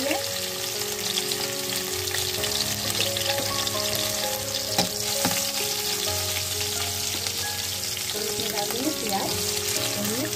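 Chopped garlic, ginger, green chillies, cumin seeds and dried red chillies sizzling steadily in hot ghee in an aluminium kadhai. A metal spatula stirs them, with two sharp clinks against the pan about halfway through.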